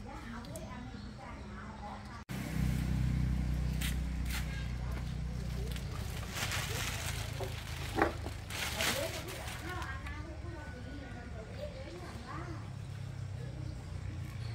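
Hard plastic motorbike body panel being handled, with rustling and clattering bursts and a sharp click about eight seconds in, over a low steady hum.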